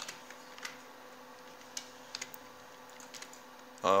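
A few scattered single clicks from a computer keyboard and mouse, over a faint steady hum; a short spoken word comes at the very end.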